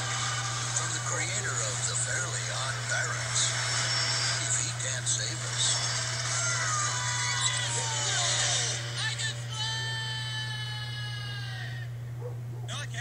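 Animated film trailer soundtrack heard off a TV: music and action sound effects with voices, ending in one long held note that falls slightly in pitch and stops suddenly. A steady low hum lies underneath.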